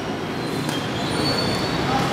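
Steady crowd noise from fight spectators, with a brief high-pitched squeal about a second in.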